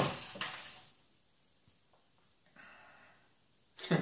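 Hands rummaging through folded paper raffle slips in a cardboard box, a rustle that dies away about a second in. Near silence follows with a faint brief rustle, then a sharp crackle of paper near the end as a slip is unrolled.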